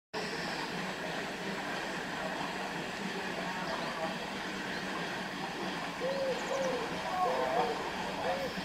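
Steady hiss of steam venting from the steam narrowboat President's boiler. In the last couple of seconds a bird gives a run of repeated low cooing calls.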